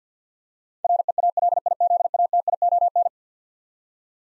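Morse code tone sent at 50 words per minute, spelling REALIZATION: a single mid-pitched beep keyed on and off in rapid dots and dashes, starting about a second in and lasting about two seconds.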